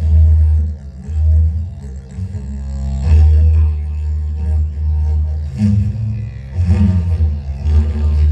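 Live amplified music carried by a didgeridoo's low drone, swelling and dipping in uneven pulses, with fainter overtones above it.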